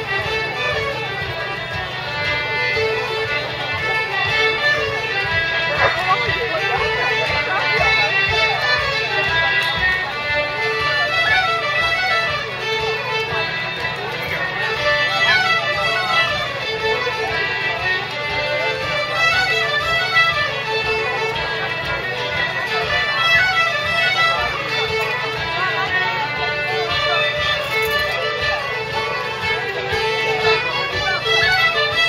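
An Irish traditional music group playing a jig together: several fiddles and tin whistles carry the melody over plucked mandolin and guitar-type strings, with concertina and harp.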